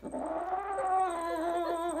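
Kitten giving one long, slightly wavering yowl with its teeth in a slice of pizza: a possessive growl-yowl guarding its food.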